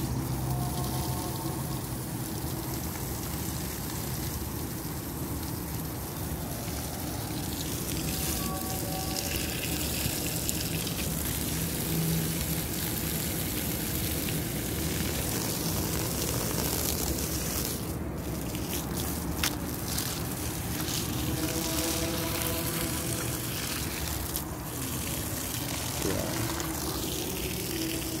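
Water spraying from a garden hose onto sandy soil, a steady rushing hiss.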